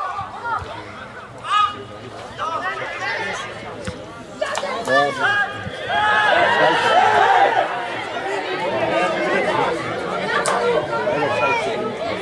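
Many overlapping voices of spectators and players at a football pitch: indistinct chatter and calls, growing louder and busier from about halfway in.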